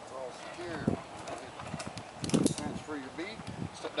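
Low voices talking, with a short cluster of sharp metal clicks about halfway through as harness carabiners are clipped onto the zip-line trolley.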